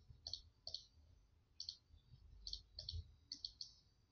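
Faint clicks of a computer mouse button, about ten short, sharp clicks at irregular intervals, coming closer together in the second half, as freehand pen strokes are drawn on screen.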